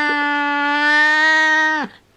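A cat's single long meow, held at one steady pitch, dipping and cutting off just before the end.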